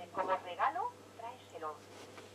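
A faint, tinny voice of a radio broadcast from the Becker Mexico valve car radio's loudspeaker, with a steady low hum underneath.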